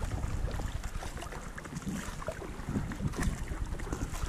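Kayak paddle strokes, the blades dipping and pulling through calm water with small splashes, under a steady rumble of wind on the camera microphone.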